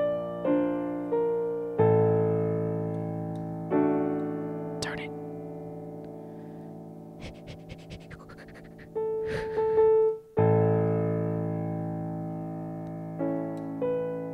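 Piano played slowly: chords struck one after another, each left to ring and fade. In a quieter stretch in the middle there are a few brief soft noises.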